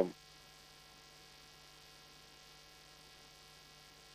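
Steady electrical mains hum with a faint, even buzz over it, unchanging throughout.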